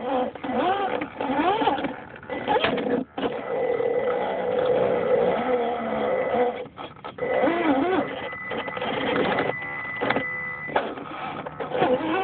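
Electric motor and geared drivetrain of an Axial SCX10 scale RC crawler whirring as it crawls, the pitch rising and falling with the throttle, with a few brief cut-outs.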